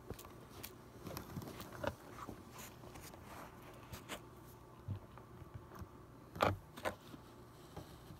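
Fingers handling and adjusting a phone camera at close range: scattered soft taps, rubs and scrapes on the device, with two louder knocks close together about six and a half seconds in.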